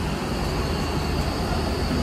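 Steady drone of a Boeing 777 airliner cabin in flight, with a faint thin high tone over the low rumble.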